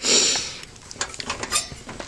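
Metal clatter from a steel filing cabinet drawer being handled: a loud rattling burst at the start, then a run of short metallic clicks.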